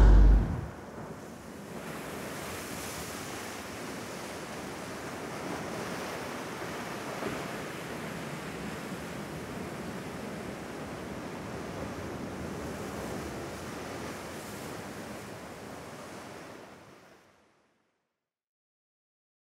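Sea surf washing on a shore: a steady wash of waves that swells gently and fades out near the end.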